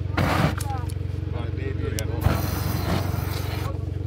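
An aerosol can hissing briefly as it sprays flammable gas into a flat car tyre that is off its bead, then a sharp click and a longer hiss as the gas is lit to try to blow the bead back onto the steel rim; no bang follows, as the bead does not pop. A steady low hum runs underneath.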